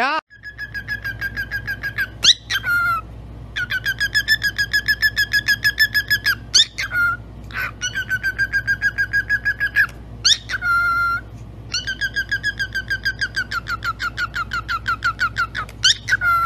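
Cockatiel warbling: long runs of rapid, quavering whistles, about seven pulses a second, broken every few seconds by short rising whistle calls. A steady low hum runs underneath.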